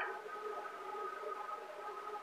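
Faint steady background hum with a few thin, even tones, and no other event.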